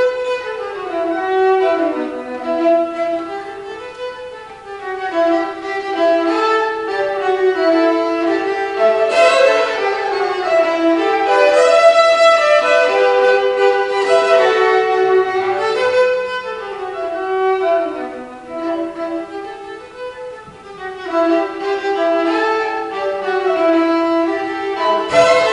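Unaccompanied violin playing a Brazilian tune, a bowed melody that keeps moving up and down, dropping briefly in loudness about four seconds in and again near twenty seconds.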